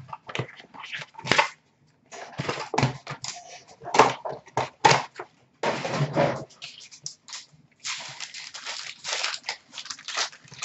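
A cardboard hobby box of Upper Deck SP Authentic hockey cards being handled and opened, and its packs shuffled and torn open. The wrappers crinkle and rustle in irregular sharp crackles and bursts.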